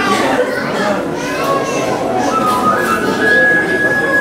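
Children's voices chattering in a large hall. Music comes in, with a high note held steady from near the end.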